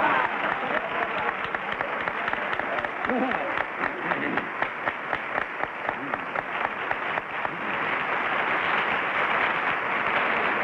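Studio audience applauding steadily, a dense patter of many hands clapping, with a voice or two faintly heard through it.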